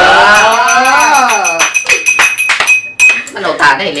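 A metal spoon stirring a drink in a glass, clinking rapidly against the sides with a bright ringing, for about three seconds. A woman's voice holds a long gliding sound over the first second and a half.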